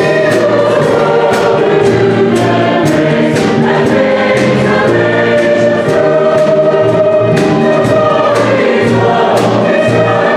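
Mixed church choir singing a Christmas song, accompanied by piano and a drum kit whose cymbal strikes keep a steady beat.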